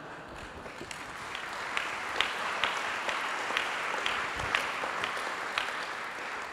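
Audience applauding in a hall, building up over the first couple of seconds and then holding steady, with single claps standing out.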